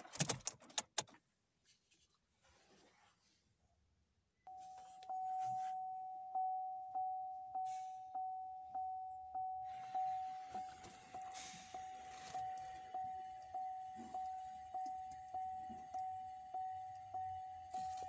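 2015 Chevrolet Cruze dashboard warning chime with the ignition switched on and the engine off: a single-pitched ding repeating nearly twice a second, starting about four seconds in. A few handling clicks come near the start.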